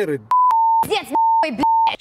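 Censor bleeps over a man's angry speech: a short, slightly higher beep, then three steady beeps of about a third of a second each, with snatches of his voice between them, blanking out his words.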